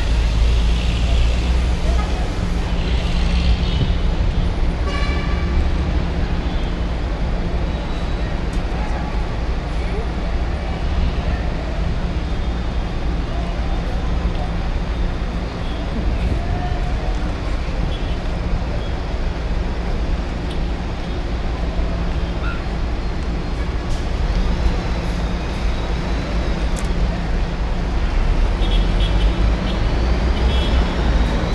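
Busy city road traffic heard from above: a steady rumble of cars and buses, with short horn toots a few seconds in and again near the end.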